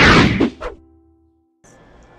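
Video transition whoosh sound effect with a short musical sting, loud at first and fading away within the first second. A brief dead silence follows, then faint steady room hiss.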